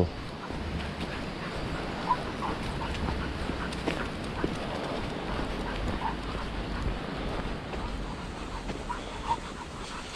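An English Springer Spaniel puppy pulling on its leash on a walk, giving a few short, faint whines over a steady background noise of walking.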